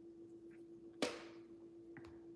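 A single sharp click or tap about a second in, ringing on briefly, over a faint steady hum.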